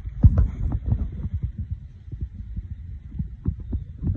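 Irregular low thumps and knocks, several a second, with faint rustling, as a phone is carried by someone walking over leaf-covered ground.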